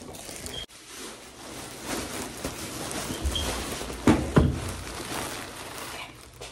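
A plastic bag rustling and crinkling as clothes are pushed into it, with the camera being handled close by. Two sharp knocks come a little past the middle.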